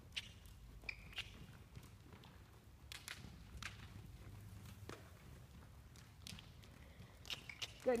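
Faint, irregular thuds and clicks of a horse trotting on soft arena dirt, over a steady low rumble.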